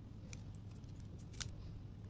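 Slate pencils clicking against one another as a handful is squared up into a bundle: a light tick about a third of a second in and a sharper click about a second and a half in, over a low steady hum.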